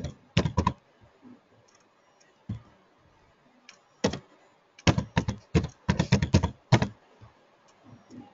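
Computer keyboard typing: a short run of keystrokes just after the start, a couple of single key presses, then a longer run of fast keystrokes in the second half.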